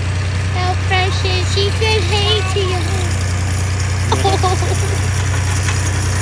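Steady low drone of the tractor engine pulling a hayride wagon, with people's voices over it during the first half and again briefly about four seconds in.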